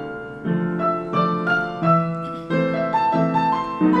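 Seiler grand piano played alone in a slow, lyrical passage: a melody over chords, a new note or chord struck about every half second and ringing on as it fades.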